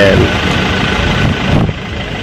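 A vehicle engine idling steadily, a low even hum with no revving.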